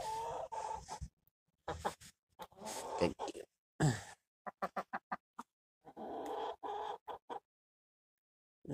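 Rhode Island Red hen clucking and calling in a string of drawn-out calls with short pauses between them, and a quick run of short clicks about halfway through.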